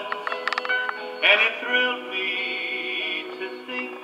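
Music from a 33⅓ RPM LP played on a Webster LARK portable record player and heard through its small built-in speaker, thin with no deep bass. A few short clicks come about half a second in.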